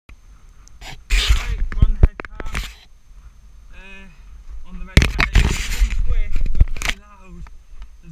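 Two loud bursts of rumbling noise on the microphone of a body-worn camera riding a Kettler Kettcar pedal go-kart downhill, the first with a few sharp knocks. Short wordless vocal sounds from the rider come between and during the bursts.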